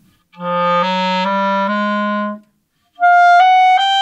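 Clarinet playing the four throat-tone notes, open G, G sharp, A and B flat, as a slow run rising one step at a time. After a short break, about three seconds in, it starts the same notes higher up. The low run is the clarinet's weak throat register, fuzzy and dull next to the same notes in another octave.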